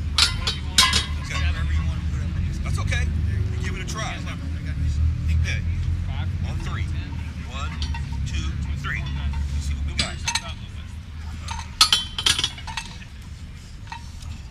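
Sharp metallic clinks of a loaded barbell and its plates at a bench press station: two near the start and a cluster about twelve seconds in. Faint voices and a steady low rumble run underneath.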